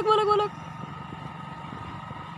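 A voice speaks for the first half second. Then comes a steady low rumble of outdoor street background noise with a faint even hum in it.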